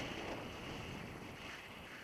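Wind rushing over the camera microphone in paraglider flight, a steady noisy rush from the glider's airspeed.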